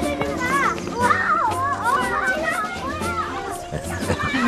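Several young children chattering and calling out at once, the voices overlapping, over background music.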